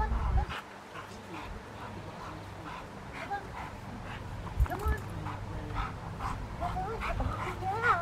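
Rottweiler whining in short calls that rise and fall in pitch, coming more often near the end, with a couple of low thumps a little past halfway.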